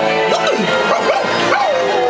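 Parade soundtrack music from float speakers, with a cartoon dog's recorded barks and yips for Pluto rising and falling over it several times.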